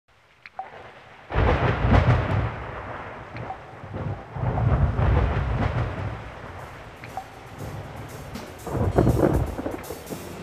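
Thunder rumbling over steady rain, with three loud, deep claps that each start suddenly and fade over a second or more.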